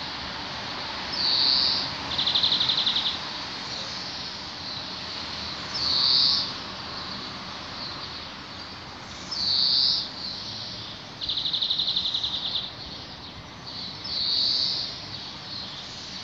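A songbird singing short high phrases every few seconds, two of them fast rattling trills, over a steady background hiss.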